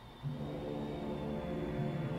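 Ominous film score music: low sustained tones that swell in about a quarter second in.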